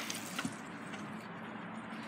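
Quiet outdoor background: a faint, steady hiss with one light click about half a second in.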